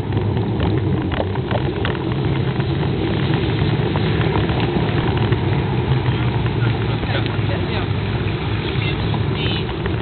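Steady low rumble of wind buffeting the camera microphone while it moves along the path, with voices of passing walkers mixed in.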